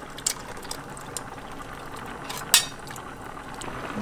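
Canned beans and their liquid pouring from a tin into a pot of simmering bean stew, over steady bubbling, with scattered small clicks and one sharp click about two and a half seconds in.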